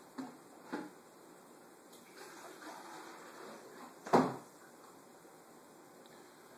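Household handling noises: a faint click near the start and a single sharp knock about four seconds in, like a cupboard door or a container being set down, over quiet room noise.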